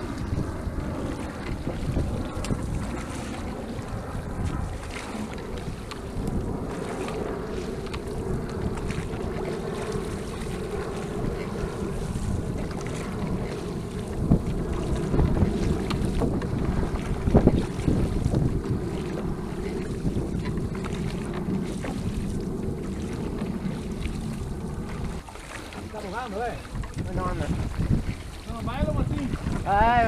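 Wind buffeting the microphone over the rush of water along the hull of a Venetian rowing boat under way with its crew rowing, with a few stronger gusts midway.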